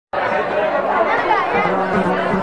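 Chatter of several people's voices talking at once, in a large hall.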